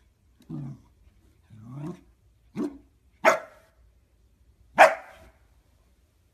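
Corgi barking at its toy that has fallen off the couch: two lower, longer calls, the second rising, then three short sharp barks, each louder than the last.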